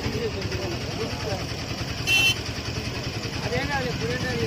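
Voices talking over the steady rumble of running vehicle engines, with a short, loud, high-pitched beep about two seconds in.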